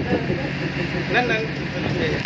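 Locomotive engine running with a steady low hum while the train stands still.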